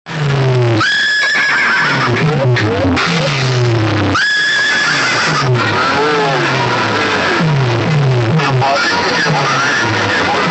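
A stacked array of horn loudspeakers on a street sound system blasts a loud effects track. It has repeated falling bass sweeps, and twice a high shrill cry breaks in abruptly and holds for about a second: once about a second in, and again about four seconds in.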